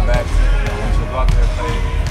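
Basketballs bouncing on a gym floor, a few separate thumps, behind a man talking close to the microphone, with music playing in the background.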